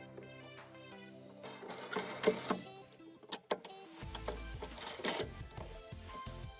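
Background music with a steady beat, with a few clicks and rattles as a plastic handle knob is worked onto its bolt on a lawnmower handle.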